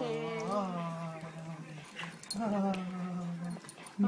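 A dog gives two long, whining moans, each held at a fairly steady pitch. The second starts a little past halfway through.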